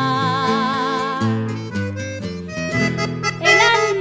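Instrumental chamamé passage: an accordion plays the melody with a wavering vibrato over guitar chords.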